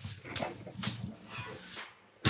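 Bubble-wrap packaging rustling and crinkling quietly in a few short, irregular handling noises.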